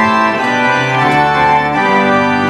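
Church organ playing held, sustained chords that change every half second or so.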